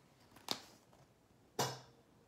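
Two brief rustling knocks from a hardcover picture book being handled and moved up to the camera, about a second apart, the second slightly longer.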